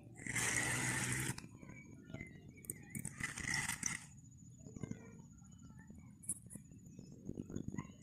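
A hooked piau splashing and thrashing at the water's surface as it is reeled in beside the boat. There are two rough bursts about a second long, one just after the start and one about three seconds in, followed by faint scattered clicks.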